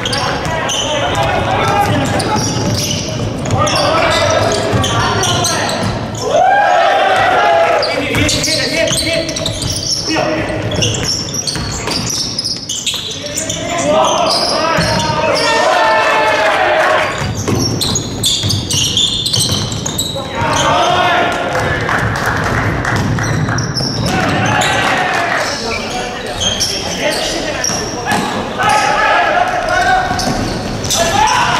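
Basketball dribbled and bouncing on a hardwood gym floor during play, with players calling and shouting, all echoing in a large hall.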